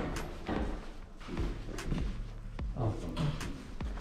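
A door thudding shut, followed by a few light knocks and thuds, with faint voices in the background.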